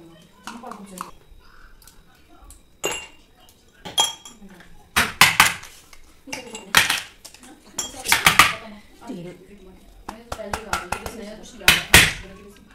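Ice cubes cracked out of a plastic ice tray and dropped into drinking glasses: a run of sharp clinks and clatters that comes in clusters, thickest around the middle and near the end.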